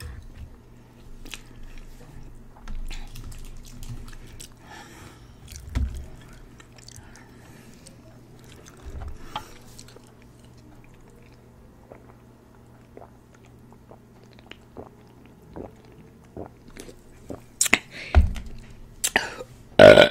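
Close-miked mukbang eating sounds: chewing and biting on sweet and sour chicken and lo mein, with light clicks of a fork in the glass dish and sips from a soda can, over a faint steady low hum. Louder sharp sounds bunch together near the end.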